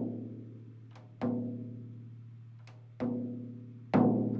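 A tom's top drumhead struck lightly with a drumstick near one tension rod, twice, each hit ringing out with a low pitch and fading slowly, with a light tick shortly before each hit. The head is being tuned: it is tapped by one lug for a reading on a clip-on drum tuner while that tension rod is tightened toward the target pitch.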